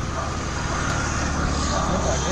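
Motor vehicle engine running, a steady low rumble that grows slightly louder toward the end.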